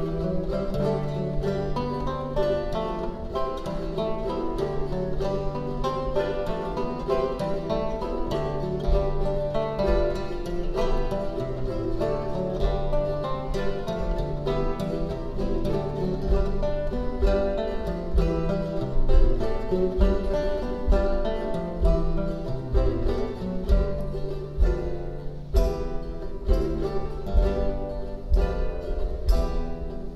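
A theorbo and a four-course baroque guitar playing an early-17th-century piece together: quick plucked chords and runs over long, deep theorbo bass notes.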